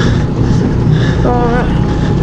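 Go-kart engine running steadily as the kart is driven round the track, a loud low drone heard from the driver's seat.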